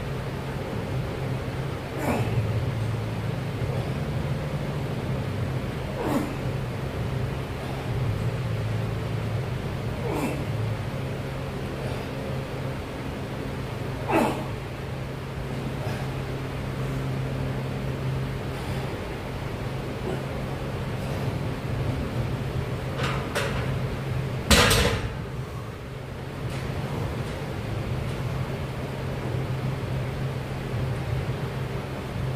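A set of barbell back squats: a short, hard breath with each rep, about every four seconds, over a steady low hum. Near the end the loaded 100 kg barbell is racked with a loud metal clank that rings briefly.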